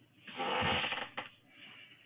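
A short breathy rush of noise on an open call microphone, under a second long, then a single click.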